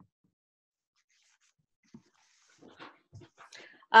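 Dead air on a video call for about two seconds, then faint scattered clicks and small rustling noises as a participant's microphone is unmuted, with a voice starting right at the end.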